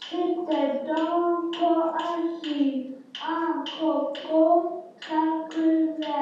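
A child with dysarthria chants a rhythmic French nursery rhyme that drills the 'cr' cluster, syllable by syllable in short phrases with held vowels and brief pauses between them.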